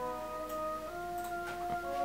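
Playback of a beat in progress: layered sustained synth chords, the chord changing about a second in and again near the end.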